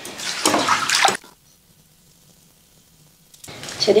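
Water poured from a wooden ladle, splashing for about a second and stopping abruptly, followed by quiet room tone; a woman's voice comes in near the end.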